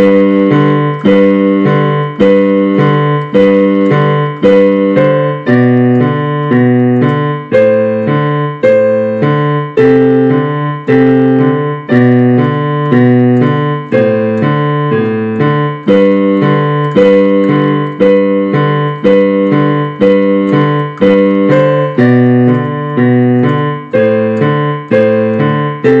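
Digital piano played with both hands: a low bass line under right-hand notes, struck in a steady, even rhythm.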